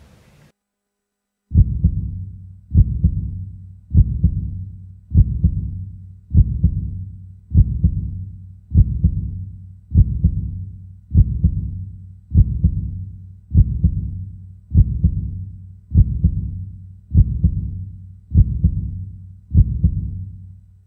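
A slow, even, low-pitched thudding pulse, one deep boom about every 1.2 seconds, each dying away before the next, over a steady low hum. It starts after about a second and a half of silence and works like a heartbeat-style beat laid on the soundtrack.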